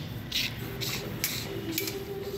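Retractable tape measure being pulled out and handled, its blade making about four short rasping scrapes.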